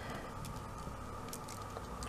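Faint clicks and rustling of a strand of amber chip beads being handled and laid out on a towel, over a steady low hum.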